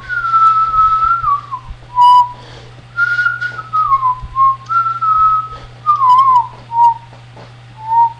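A man whistling a tune unaccompanied: several short phrases of clear single notes that slide up and down in pitch, with a faint steady low hum underneath.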